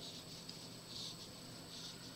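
Faint, soft rustles of yarn being drawn through stitches with a metal crochet hook while double crochet stitches are worked.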